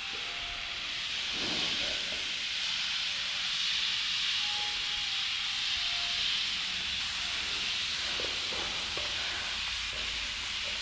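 Weighted push sled sliding across artificial turf: a steady scraping hiss.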